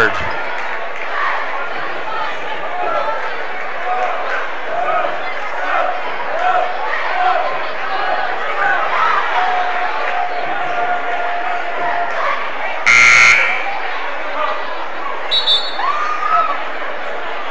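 Crowd chatter in a gym, then about 13 seconds in a gym scoreboard horn sounds once, a short loud buzz, signalling the end of the 30-second timeout.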